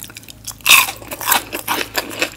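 Biting into and chewing a crispy fried tater-tot-style potato nugget: one loud crunch about two-thirds of a second in, then smaller crunches as it is chewed.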